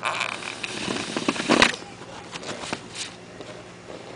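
Rustling and scraping with a sharp knock about one and a half seconds in, then a few scattered light clicks.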